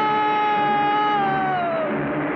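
A man's long, high-pitched scream of fright, held on one pitch and then falling away near the end.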